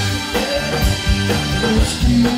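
Rock band playing live without vocals: a drum kit keeping a steady kick-drum beat under bass and guitar.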